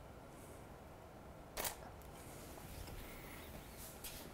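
A Canon EOS 5D Mark III's shutter firing once about a second and a half in, a single sharp click as a frame is taken, with a fainter tick near the end over low room tone.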